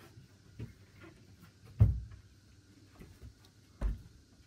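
Two short, dull thumps about two seconds apart, the first the louder, with a few faint ticks between them over a quiet background.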